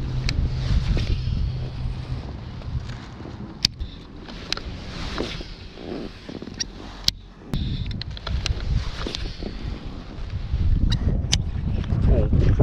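Wind buffeting the microphone, with a handful of sharp clicks and knocks from handling the baitcasting rod and reel while a hooked bass is fought and reeled in.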